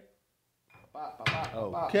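Near silence for about the first second, then a man's voice comes in with a short knock a little after a second in.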